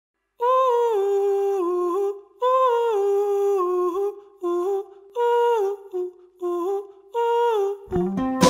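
Soundtrack music: a solo voice hums a wordless melody in about six short phrases, each stepping down in pitch, with brief pauses between them.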